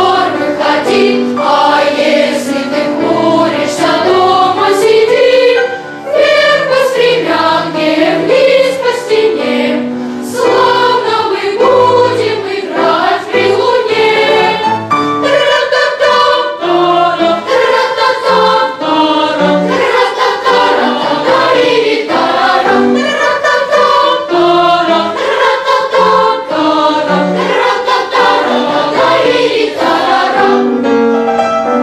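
Boys' choir singing a Christmas song, with a short pause between phrases about six seconds in.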